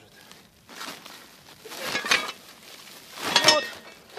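Woven sack of scrap iron being handled and lifted: the bag rustles and the metal pieces inside clink together in two swells, about two seconds in and again, louder, near the end.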